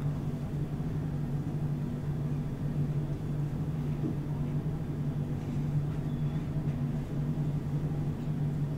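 Room tone: a steady low hum that holds at one level throughout, with no speech.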